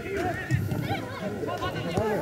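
Footballers shouting and calling to each other during play, several distant voices overlapping in short calls.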